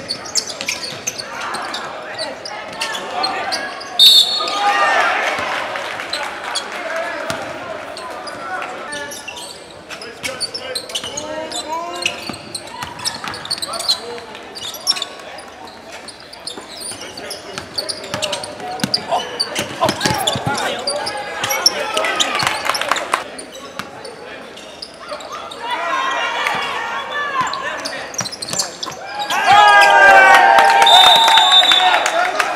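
Live basketball game sound in an echoing gym: a basketball bouncing on the hardwood court, with players and onlookers shouting and calling out throughout.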